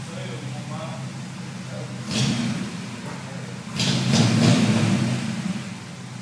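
The 283 small-block V8 of a 1964 Chevrolet El Camino running at low speed as the car creeps forward, with two louder surges of throttle, about two seconds in and again from about four seconds to nearly the end.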